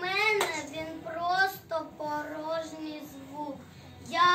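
A young child's high voice delivering a verse in drawn-out, sing-song phrases.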